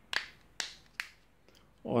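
Plastic battery cover on the back of a V8 smartwatch being pressed shut: three sharp clicks about half a second apart.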